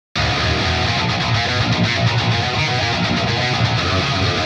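A pair of heavily distorted metal rhythm electric guitars, played through the Neural DSP Fortin Nameless amp-simulator plugin with its Fortin Grind pedal model and hard-panned left and right, playing a dense riff. It starts abruptly a fraction of a second in and stays loud and even.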